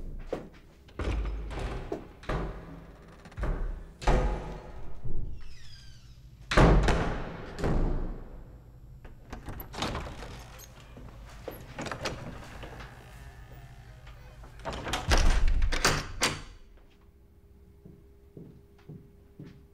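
A classroom door being handled and shut: a series of separate thuds and knocks, the loudest about six and a half seconds in, with a short high squeak just before it and another cluster of knocks near the end.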